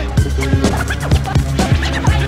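Hip-hop beat with turntable scratching: a steady drum pattern over bass, with quick scratch sweeps between the hits.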